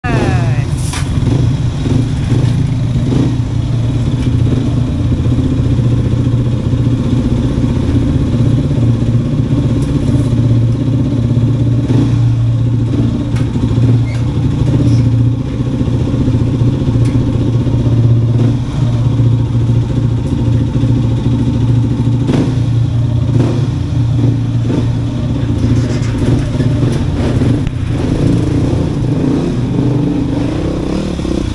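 Dirt bike engines running steadily at low revs inside a concrete culvert, with a few short knocks along the way.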